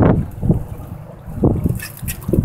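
Gusty wind buffeting the microphone, a low, uneven rumble that swells briefly about half a second in and again near a second and a half.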